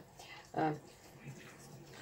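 A woman's short hesitant "uh" about half a second in. Otherwise quiet, with faint soft stirring of vegetables in a frying pan with a spatula.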